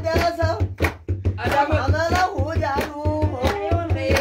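A group singing together while clapping their hands in rhythm, over a steady low beat. The singing and clapping drop away briefly about a second in, then go on.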